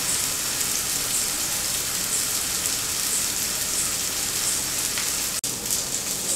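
Masala-coated fish pieces shallow-frying in oil on a flat pan: a steady crackling sizzle. It briefly cuts out near the end.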